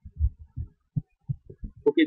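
A string of soft, deep thumps at uneven spacing, about four a second, with a voice starting near the end.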